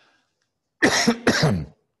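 A man coughing twice into his fist, two coughs in quick succession about a second in.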